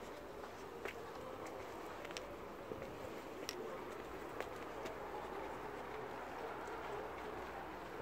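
Quiet city street background: a steady low hum of distant traffic and surroundings, with a few faint sharp clicks.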